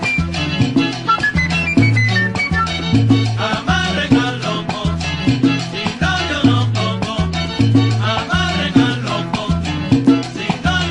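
Salsa recording by a charanga band: a repeating bass line drives the groove under busy melody lines higher up, with the upper parts getting fuller about three and a half seconds in.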